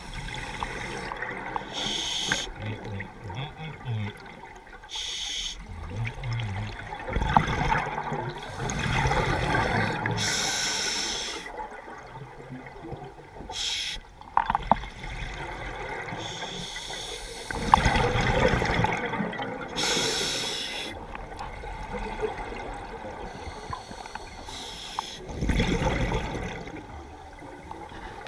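Scuba regulator breathing underwater: a hiss at each inhale through the demand valve, then a burst of exhaled bubbles, repeating every few seconds.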